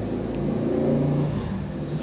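Low engine hum with a faint pitch, growing louder to about halfway and then easing.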